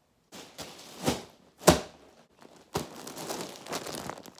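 Close handling noise: a few sharp knocks, the loudest under two seconds in, then a plastic poly mailer package rustling as it is handled right at the microphone.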